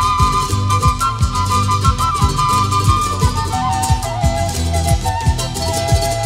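Ecuadorian Andean folk band playing the instrumental introduction of an albazo, recorded live: a flute melody in two parallel voices over bass and a steady drum beat. The melody steps down to a lower register a little past halfway.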